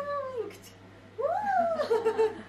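A baby's high-pitched vocal sounds: a short falling one at the start, then a longer one that rises and falls about a second in.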